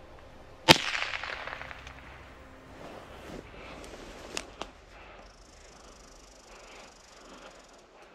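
A single .22 LR rifle shot from a Derya TM-22 cracks out about a second in and trails off over the following second. Two fainter sharp clicks come a little past the middle.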